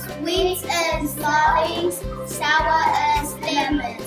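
Children singing a song over a backing track with a steady beat.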